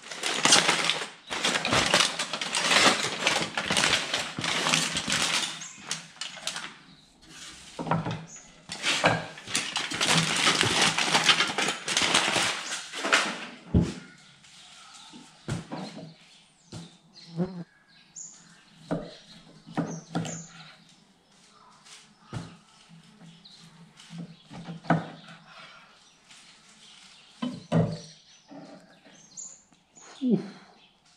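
Aluminium foil being unwrapped and crinkled from around a package of rested beef short ribs, in two long spells over the first half. Then a knife cuts through the ribs, with scattered short knocks of the blade on the wooden board.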